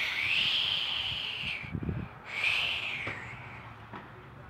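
Two long, breathy whistling sounds, each rising then falling in pitch; the first lasts about a second and a half, and the second comes after a short gap. A few soft handling thumps fall between them.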